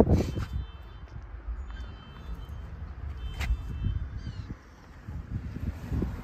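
A Honda Civic hatchback's door opening with a sharp click at the very start, followed by low rustling and handling noise as the phone moves into the cabin, with a single click about three and a half seconds in and faint high chirps.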